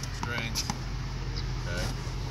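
Brief, indistinct voices over a low, steady rumble, with a couple of faint taps about half a second in.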